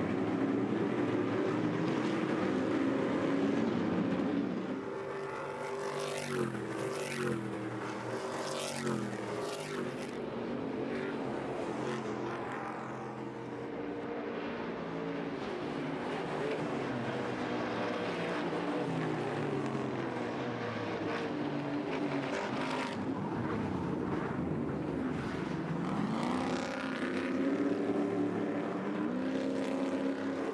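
Several Stadium Super Trucks' V8 engines racing, the engine notes rising and falling in pitch as the drivers accelerate, shift and lift, with several trucks overlapping. The engines get louder near the end as a pack comes close.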